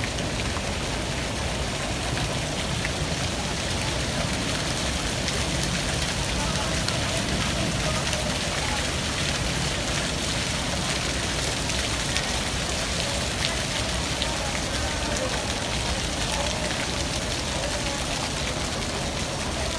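Small fountain jets splashing steadily into a shallow pool, a constant hiss of falling water.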